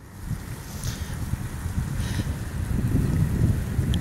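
Wind buffeting a phone's microphone: an uneven low rumble that grows louder over the few seconds.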